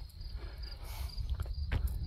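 Insects chirping steadily in a fast, even pulse, over a low outdoor rumble, with a few faint ticks.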